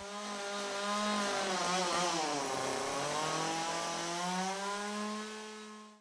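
Two-stroke chainsaw running at high revs while cutting into wood. Its note sags under load about halfway through, climbs back up, then fades out at the end.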